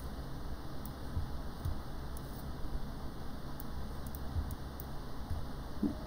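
Quiet room tone: a steady low hum with faint hiss and a few faint, scattered clicks.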